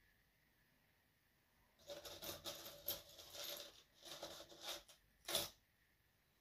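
Close handling noise: irregular scratchy rustling and small clicks for a few seconds, ending in one sharper click.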